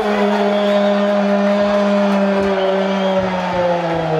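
A man's long drawn-out shout on one held vowel, steady for about three and a half seconds and then dropping in pitch at the end: a commentator's extended goal cry.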